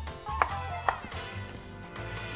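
Kitchen knife chopping a carrot on a wooden chopping board: two sharp knocks about half a second apart, then fainter taps, over background music with a steady bass.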